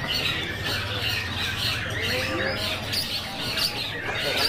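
Long-tailed shrikes (cendet) singing in a dense, harsh chorus of quick chattering and sliding notes, many birds overlapping at once.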